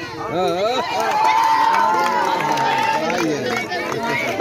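A crowd of children shouting and cheering around a kabaddi raid, many voices at once, with one high voice held for about two seconds in the middle.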